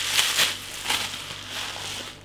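Paper wrapping crinkling and crackling as it is pulled off a glass beer bottle by hand, in irregular bursts that ease off toward the end.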